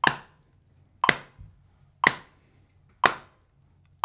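Metronome set to 60 BPM clicking once a second, four sharp clicks, with a hand tapping on a leg in time with it.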